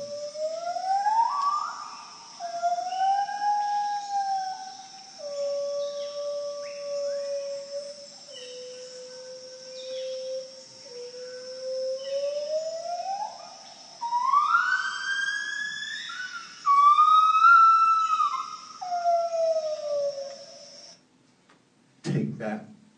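Field recording of a gibbon singing, played back over a hall's speakers: a series of long whoops that swoop up and level off, climbing higher and getting louder in the second half. A steady high cicada drone runs beneath. Both cut off about a second before the end.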